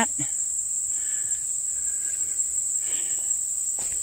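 Steady, high-pitched chorus of insects trilling continuously without a break.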